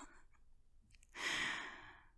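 A woman's sigh: one breathy exhale that starts about a second in and fades out.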